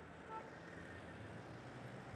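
Faint background hum of distant street traffic, with a faint short beep about a third of a second in.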